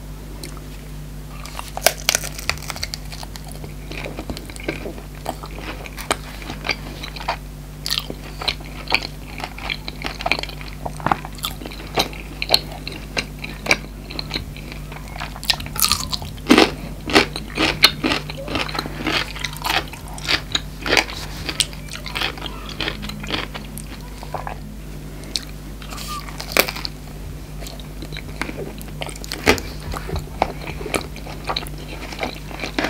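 Close-miked eating: bites into a toasted flour-tortilla chicken fajita wrap and a pickled cucumber, with irregular crunching and chewing clicks. A steady low hum runs underneath.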